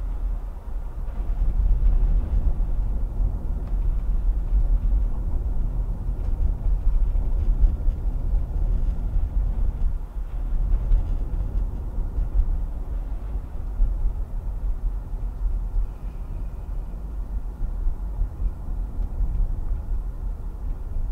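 Steady low rumble of a car driving along a paved road, tyre and engine noise heard from inside the cabin.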